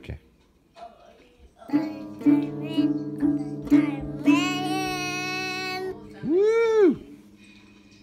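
Acoustic guitar strummed unevenly by a toddler, about six strums over two and a half seconds with the strings ringing on. Then a child's voice sings a long held note and a short note that rises and falls.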